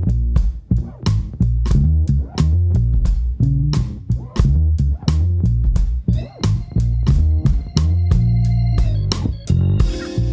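Electric bass played fingerstyle through the Crazy Tube Circuits Locomotive, a 12AY7 tube overdrive for bass, in a groove over a steady drum beat. Higher overtones ring over the bass notes from about six seconds in.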